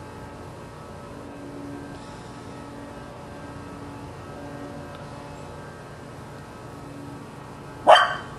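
A dog barks once, loud and sharp, near the end, at a tennis ball floating out of reach in the pool.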